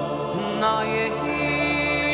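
Live orchestra playing slow, sustained chords. About half a second in, a high melody line with vibrato enters over them.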